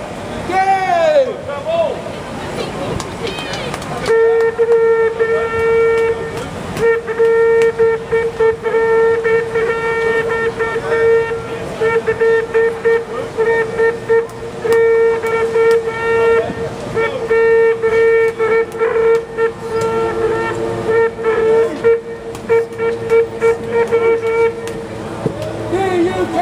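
A horn sounding one long, steady note that starts about four seconds in and is held for about twenty seconds, over a crowd talking.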